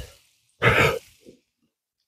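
A man's single short breathy vocal sound, like a sigh or throat clearing, about half a second in; the rest is near silence.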